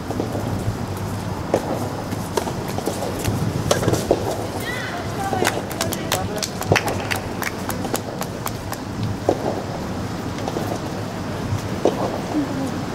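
Steady outdoor background noise with scattered short, sharp taps, thickest in the middle, and faint voices.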